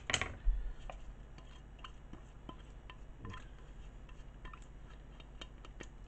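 A sharp clink and a dull low thump in the first half second, then scattered faint clicks and taps: a plastic bowl and spoon knocking against a steel soup pot as grated pickled cucumbers are scraped into it.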